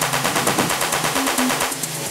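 Techno track in a breakdown: rapid, evenly spaced electronic percussion ticks with short low synth blips and no kick drum. The high ticks thin out near the end.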